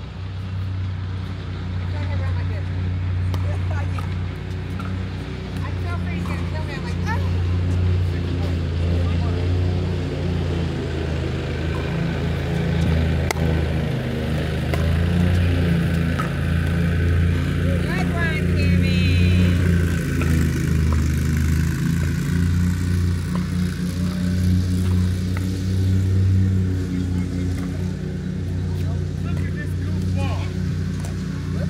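A loud, steady low rumble throughout, with pickleball paddles popping against a plastic ball as sharp clicks during a doubles rally, and faint voices.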